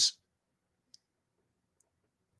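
Near silence after a man's voice trails off at the very start, with two faint short clicks about a second apart.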